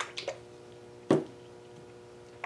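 A plastic two-ounce bottle of pouring acrylic paint being handled and moved about, giving a few short knocks and sloshes, the loudest about a second in, over a faint steady hum.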